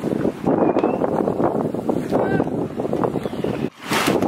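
Wind buffeting the camera microphone, a rough, unevenly pulsing rumble. It drops out briefly near the end.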